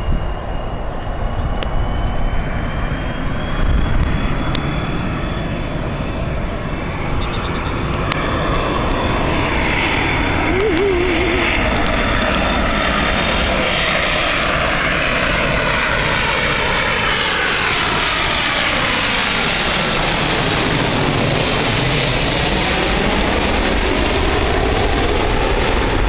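Airbus A330 jet airliner on final approach, passing low overhead with its engines running. There is a steady rumble and a thin whine that rises slowly in pitch. The sound gets louder about seven seconds in and stays loud, with a sweeping quality as the plane goes over.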